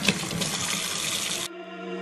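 Tap water running from a utility-sink faucet, a steady rush. About a second and a half in it cuts off abruptly and background music with held notes takes over.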